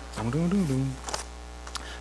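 A man's voice: one brief drawn-out hesitation sound, its pitch rising and falling, then a couple of faint clicks, over a steady low electrical hum.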